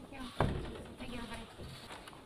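Low room sound of a formal meeting hall: a single sharp knock about half a second in, then faint murmuring voices.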